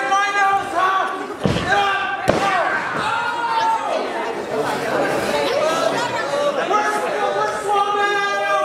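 Two heavy slams on a wrestling ring's mat, about a second and a half in and again just under a second later. Under them runs steady shouting and chatter from a ringside crowd, echoing in a large hall.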